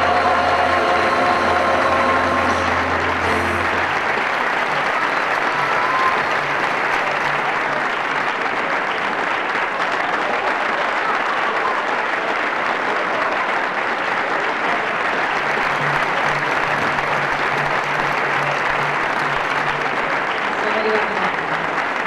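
Large audience applauding steadily, while the choir's final held chord and a low keyboard note die away in the first three to four seconds.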